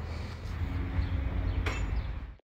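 A vehicle engine idling with a steady low rumble, with a short click near the end.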